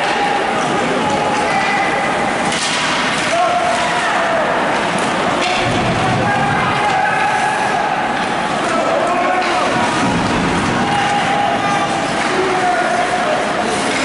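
Spectators' voices at an ice hockey game, overlapping chatter and drawn-out shouts echoing in the rink, with occasional sharp knocks from sticks and the puck.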